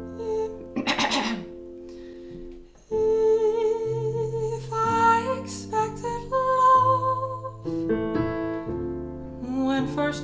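A woman singing a slow jazz-style ballad with vibrato over her own digital piano chords, deliberately pitched too high, above her best vocal range. The piano plays alone for the first few seconds, and the voice comes in about three seconds in.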